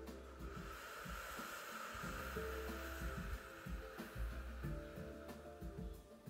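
A long, slow out-breath blown through pursed lips, as if through a tiny straw, lasting about five seconds: the drawn-out exhale of a calming breathing exercise. Soft instrumental background music plays underneath.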